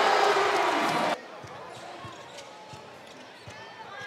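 Arena crowd cheering a made three-pointer, cut off suddenly about a second in. After that, quieter court sound: a basketball being dribbled, with faint scattered knocks.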